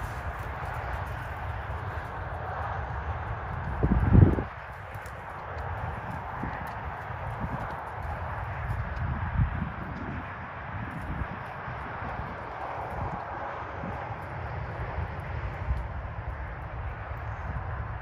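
A ridden horse walking and trotting on sand, its hoofbeats soft and irregular, under a steady rumble of wind on the microphone. A brief louder rumble comes about four seconds in.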